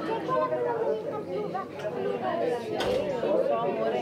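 Indistinct chatter of several people talking at once, with a single sharp knock about three seconds in.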